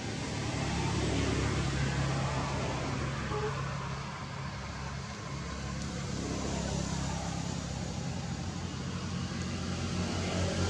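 An engine running steadily, a low hum that swells slightly about a second in.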